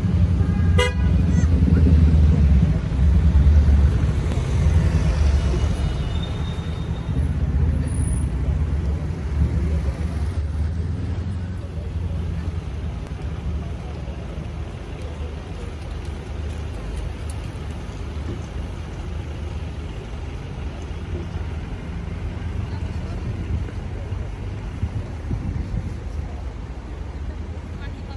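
Road traffic running in a queue of cars on a busy city street, with a car horn sounding at the very start. The low rumble is heaviest in the first several seconds and then eases off.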